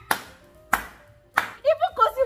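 Three loud hand claps, evenly spaced about two-thirds of a second apart, followed by a woman's voice starting near the end.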